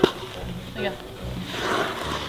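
Ice skate blades scraping and gliding on rough outdoor ice, with a grainy scrape in the second half, a sharp click at the very start and one short spoken word.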